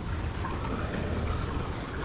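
Steady low outdoor rumble, like wind buffeting the microphone, in a pause between speech.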